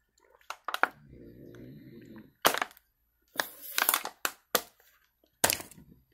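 Thin plastic water bottle crackling and cracking as it is gripped and tipped to drink, in sharp separate clicks with a longer crinkling stretch past the middle. A short low hum from the drinker comes about a second in.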